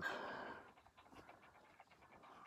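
A person's soft breath out, fading over about half a second, then quiet room tone with a few faint ticks.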